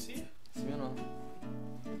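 Acoustic guitar strumming chords, each left to ring, with a new chord about half a second in and another about a second and a half in.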